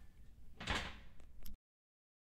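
A brass tuba being set down on a hard floor: a dull thump with some metallic rattle, followed by a couple of small clicks. The recording then cuts to dead silence a little past halfway.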